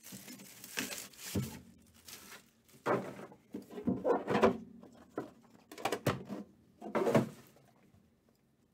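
Cardboard trading-card box being handled and opened by hand: the inner box slides out of its outer sleeve, with several short scrapes, rustles and light knocks of cardboard against the table.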